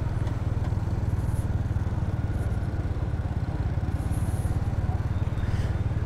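Motorbike engine running at a steady cruising note while riding, with road and wind noise.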